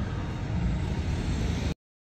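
City street traffic: a steady wash of passing cars. It cuts off abruptly to silence near the end.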